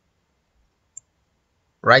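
A single short click from a computer mouse button about a second in, amid near silence; a man starts speaking near the end.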